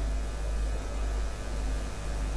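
Steady low electrical mains hum with a faint hiss over it, from the microphone and sound system.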